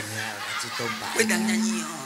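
Amplified voices on stage chuckling and talking over the sound system, ending in one drawn-out held vocal note in the last second.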